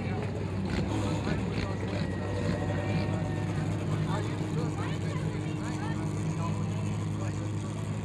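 Mini stock race car engine running at low, steady revs as the car rolls slowly along the dirt track, with crowd voices chattering over it.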